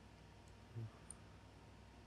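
Near silence: room tone with faint computer-mouse handling, a soft low thump a little under a second in and a tiny click just after.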